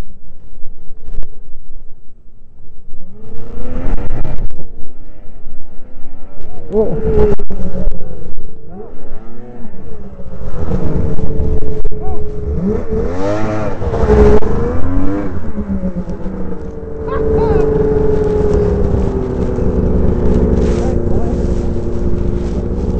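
Yamaha SRX snowmobile's two-stroke engine revving in repeated rising and falling bursts, then held at a fairly steady high pitch for the last few seconds, straining as the buried sled is hauled out of the snow on a tow strap.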